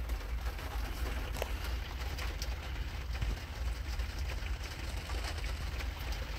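Steady low hum with a faint background hiss and a few faint ticks: room noise picked up by the microphone.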